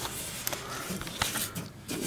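Handling noise up under a lawn tractor: light rustling with a few scattered sharp clicks as a hand works against the metal frame and parts.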